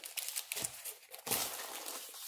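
Plastic bag wrapping a rolled canvas crinkling and rustling as the roll and its cardboard box are handled, with a louder rustle about one and a half seconds in.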